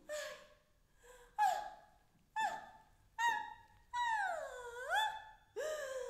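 A woman's wordless vocal cries: a run of short, high-pitched exclamations, each starting sharply and bending in pitch, then, past the middle, one longer cry that swoops down and back up.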